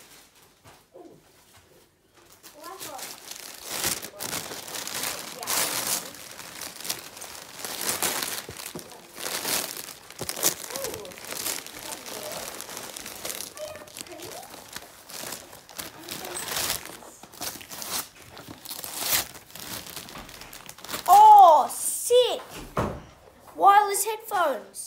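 Gift wrapping paper crinkling and tearing as a present is unwrapped, an uneven run of rustles and rips. Near the end a boy's voice exclaims loudly.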